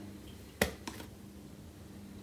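A wet hand slapping down flat onto a hard diatomaceous earth bath mat: one sharp slap a little past half a second in, then a lighter tap shortly after.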